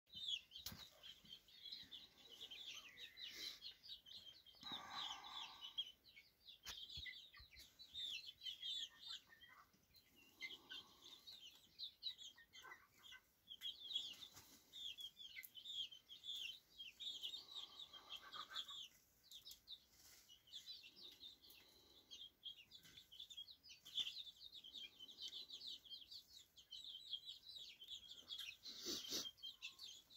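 A flock of young chickens peeping faintly and continuously, many short high calls overlapping, with an occasional lower cluck and a few sharp clicks.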